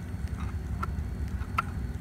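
A few faint, short clicks and taps of a clear plastic lure box being handled, over a steady low hum.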